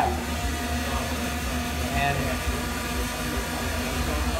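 Intel Falcon 8+ octocopter drone hovering, its rotors giving a steady, even hum.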